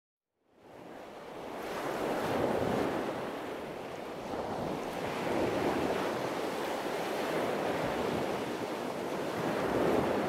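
Ocean surf: waves breaking and washing ashore in a steady rush of water. It fades in after about half a second of silence and reaches full level about two seconds in.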